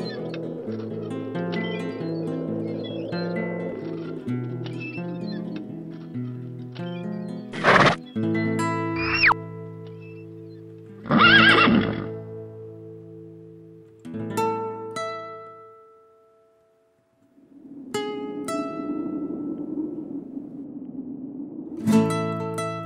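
An Argentine folk tune played on a criolla guitar, interrupted about halfway by sudden cartoon sound effects that include a horse whinnying. A few sparse plucked notes follow, the sound drops out for about a second, and the music comes back near the end.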